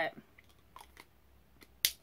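A pause in a woman's speech filled with a few faint small clicks, then one sharp click near the end.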